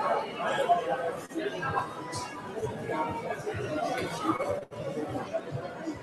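Background chatter of many people talking at once in a large hall, steady throughout, with no single voice standing out.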